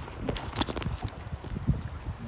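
Irregular clicks and knocks as a phone holder on an aluminium stand is handled and seated in a kayak's scupper hole. The knocks cluster about half a second in, over a low rumble of wind and water.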